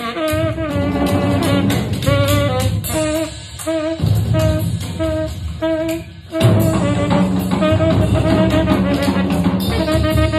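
Tenor saxophone improvising a jazz line, with a run of short repeated notes in the middle, over a backing of bass and drums.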